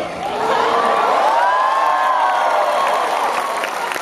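Large convention-hall audience cheering, many high voices overlapping, with clapping underneath. It swells about half a second in and eases off near the end.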